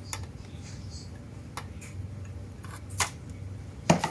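Scissors snipping through the plastic strap that holds a diecast model car to its display base: a few sharp clicks a second or more apart, with a louder knock near the end.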